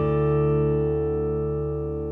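The closing chord of an intro jingle: a guitar chord held and ringing out, slowly dying away.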